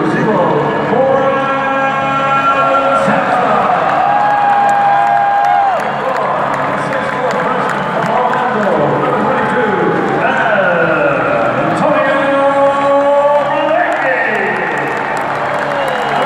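Arena PA announcer calling out the starting lineup in long, drawn-out, echoing calls, some syllables held for a second or more, over a cheering and applauding crowd.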